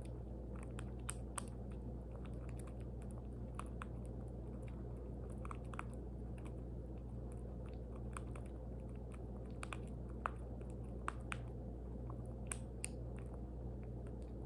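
Baby squirrel suckling from a feeding syringe: small, irregular wet clicks and smacks of its mouth on the syringe tip, a few louder ones in the second half, over a steady low hum.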